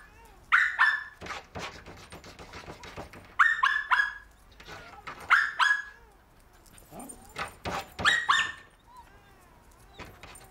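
Small dog barking in four short bursts of two or three yappy barks each, a few seconds apart, with softer knocks and taps between the bursts.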